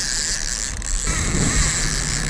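Fishing reel's clicker ratcheting fast as line is pulled off: a king mackerel has struck the trolled bait and is running.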